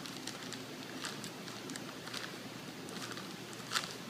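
Plastic bag crinkling in short, irregular crackles as it is twisted shut around a block of clay, with one louder crackle near the end.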